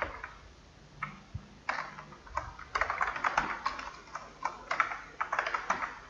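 Typing on a computer keyboard: a few separate key clicks, then a quick run of keystrokes from about three seconds in, as a word in a line of code is deleted and retyped.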